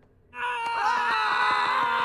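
A moment of near silence, then from about a third of a second in a long, loud sustained yell from cartoon characters, a battle cry as they charge at each other with swords.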